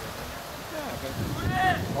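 Distant high-pitched shouts of young football players calling out on the pitch, a couple of calls in the second half, over a low wind rumble on the microphone.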